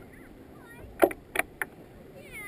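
Kayak being paddled: three sharp splashes of water close together, about a second in, over a low steady wash.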